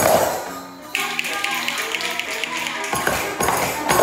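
Music playing while a group of children tap small hand drums and shake jingle bells along with it, with a loud burst of shaking and tapping at the start and again about three seconds in.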